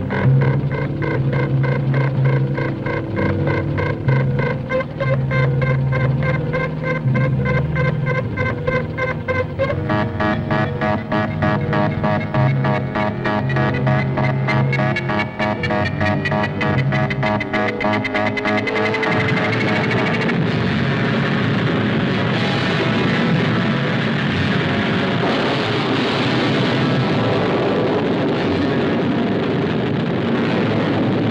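Science-fiction film score of rapidly pulsing notes that quicken and climb in pitch, building tension through a rocket launch. About two-thirds of the way in, a steady rushing noise of the rocket engine firing takes over.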